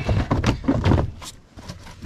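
Plastic footwell panel of a Can-Am Outlander ATV being pried and pulled free: a run of knocks, scrapes and creaks of the plastic, busiest in the first second and quieter after.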